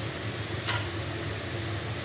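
Sliced onions frying in oil rendered from goat fat in an iron karahi: a steady sizzle, with one sharp click just under a second in.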